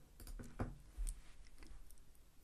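A few faint, sharp clicks at a computer, about four spread over two seconds, made while entering a trade order.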